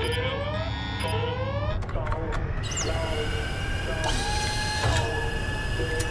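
Cartoon spaceship sound effects: a steady low rumble with short rising electronic bleeps repeating a little faster than once a second. About halfway through, a long whine starts and slowly rises in pitch.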